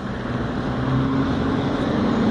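A motor vehicle drawing near on the street, its engine hum and road noise growing steadily louder.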